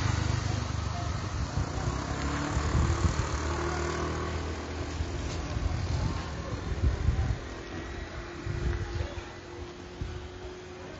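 Low rumble of a motor vehicle engine running with a faint steady hum, slowly fading away.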